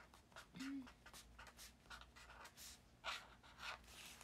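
Faint scratching of a pen on paper in short, irregular strokes, as someone writes or draws by hand. A brief soft hum of a voice about half a second in.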